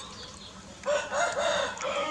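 A rooster crowing once: one drawn-out crow that starts a little under a second in and lasts about a second, its notes rising and falling in a string of arches.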